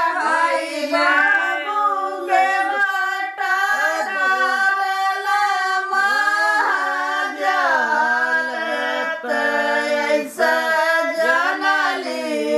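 A group of women singing a traditional North Indian wedding folk song (geet) together, their voices holding long notes that bend up and down in a continuous strain.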